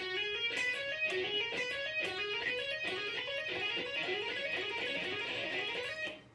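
Electric guitar playing a fast legato run, over and over: one picked note on the B string and one on the high E string, each hammered on to two higher notes, climbing A–B–C♯ then D–E–F♯ at the 10th, 12th and 14th frets in a whole step to whole step pattern.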